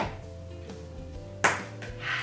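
Two sharp plastic clicks from a Boom Boom Balloon game, about a second and a half apart, as a pin is pushed into the stand around the balloon; the balloon does not pop. Soft background music plays under them.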